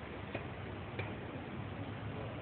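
Two sharp clicks about two thirds of a second apart over a steady background hiss and hum.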